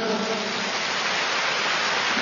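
A large indoor audience applauding, a steady, even wash of clapping.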